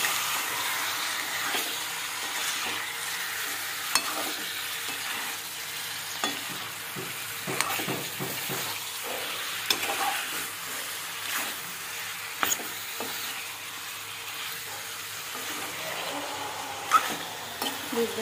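Raw chicken pieces sizzling in hot oil and masala paste in a metal pan, with a steady hiss, while a metal spoon stirs and scrapes them, clicking sharply against the pan every few seconds and loudest near the end. The oil has separated from the masala, the sign that the masala is fried through before the chicken goes in.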